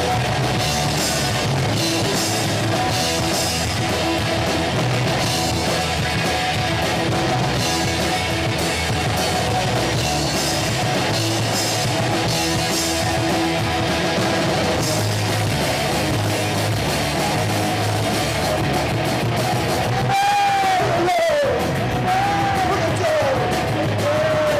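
Live punk rock band playing loudly: distorted electric guitars through Marshall amplifier stacks, bass and a drum kit, with wavering, sliding guitar pitches near the end.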